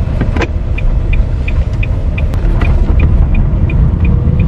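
Car running along the road, heard from inside the cabin as a steady low rumble, with the turn-signal indicator ticking evenly about three times a second.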